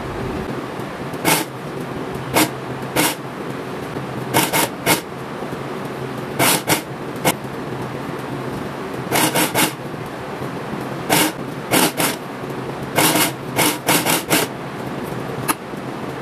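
Industrial coverstitch machine sewing with a single needle: the motor hums steadily while the machine stitches a knit dress in repeated short bursts, each a fraction of a second long.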